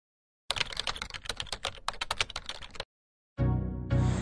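Computer-keyboard typing sound effect, a rapid run of key clicks for about two seconds that matches on-screen title text being typed out. It stops abruptly, and near the end music begins.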